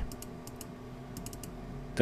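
Faint clicks of a computer keyboard and mouse: several separate light clicks, with a quick cluster just past the middle.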